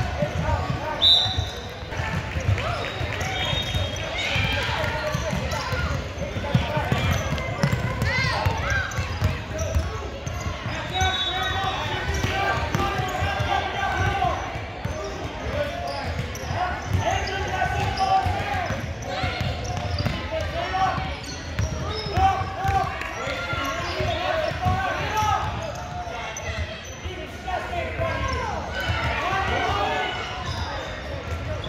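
Basketball game in a gym: a ball bouncing and players' feet on the hardwood court, under continuous overlapping shouts and chatter from players and spectators, echoing in the large hall.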